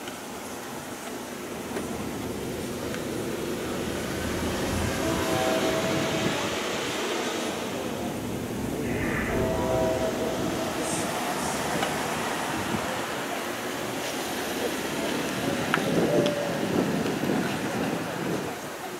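Rumble of passing vehicle traffic that swells and fades twice, with brief steady tones about five and nine seconds in.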